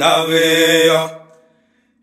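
A man's sung vocal in a chant-like song holds one long steady note, then fades out a little past a second in, leaving a brief near silence.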